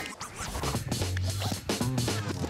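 A TV show's transition jingle: music with turntable-style scratching.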